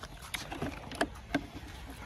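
A few short, sharp plastic clicks and knocks as hands work at the headlight cowl of a Bajaj Pulsar NS125 motorcycle, over a faint outdoor hiss.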